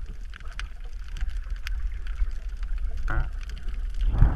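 Water noise around a snorkeler's submerged camera: a steady low rumble of moving water with scattered faint clicks and crackles, and a short louder burst about three seconds in.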